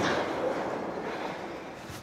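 Large sliding door of a metal-clad barn rolling along its track, a rolling metallic noise that fades away as the door comes to rest.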